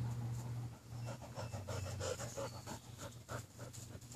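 A Rottweiler panting close by in quick, repeated breaths, over a steady low hum.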